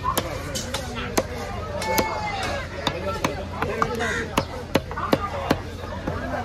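A heavy fish-cutting knife chopping a big diamond trevally into chunks on a round wooden chopping block: sharp, hard chops of the blade through the fish into the wood, about two a second at a steady working pace.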